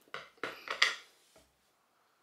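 A few sharp clicks and knocks in the first second as a shaving soap tub and its inner lid are handled and opened, with one fainter tap a little later.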